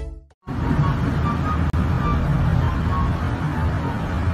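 Steady outdoor street noise, a low rumble with hiss, starting about half a second in after a brief silence, with a few faint short high chirps on top.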